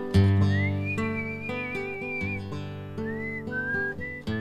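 Acoustic guitar strummed and held in chords, with a whistled melody over it: a high whistle rises into a long wavering note, then a second shorter phrase near the end.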